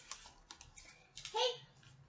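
A few light clicks and taps from books being handled between titles, followed by a short spoken word.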